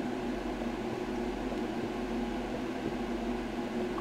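Steady fan-like machine hum with a constant low drone, unchanging throughout.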